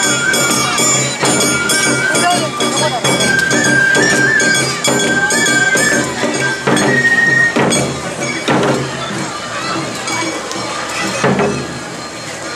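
Awa Odori festival music: a bamboo flute (shinobue) plays a held, trilled melody over drums and a small metal hand gong (kane), with voices calling among the dancers.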